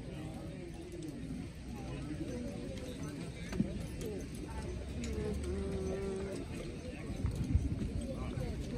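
Draft horses' hooves stamping on the dirt track under the faint chatter of spectators' voices, with a few heavier thumps near the end as the team moves off.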